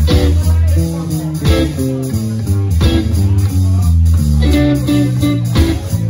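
Live rock band playing an instrumental passage: electric bass line, electric guitar and drum kit, with sharp drum hits every second or so.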